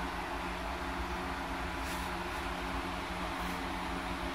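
Steady mechanical hum made of several low steady tones under an even hiss.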